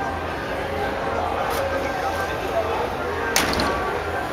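Steady background hum and indistinct voices of a large room, with one sharp slam about three and a half seconds in: the hood of a Toyota Sequoia being shut.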